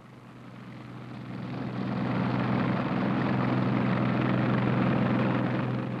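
A steady engine drone fades in over about two seconds and then holds: a low hum with a rushing noise above it.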